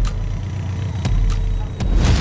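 Street traffic: a loud, low vehicle rumble, with a couple of sharp clicks.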